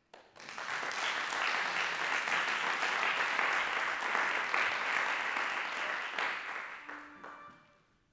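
Audience applauding, the clapping building up within the first second and dying away over the last second or two.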